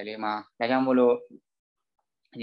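Speech only: a voice talking for about a second and a half, then breaking off.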